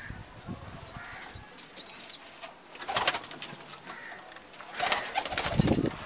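Domestic pigeons in a loft: two loud bursts of rapid wing flapping, about three seconds in and again near the end, with pigeon cooing around them.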